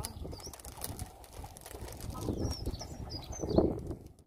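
Wind buffeting the microphone in uneven gusts, with a louder gust near the end, and faint short bird chirps high above it, a few about half a second in and more later on.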